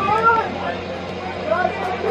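Indistinct voices of spectators and players shouting and calling out during a floodlit soccer match, over a steady low hum.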